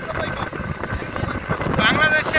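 Wind rushing over the microphone and the road noise of a moving vehicle, a steady rough noise without a clear beat.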